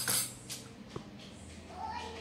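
An egg being cracked: a short rustling burst, then a single sharp tap about a second in as the egg is knocked against a small stainless-steel bowl.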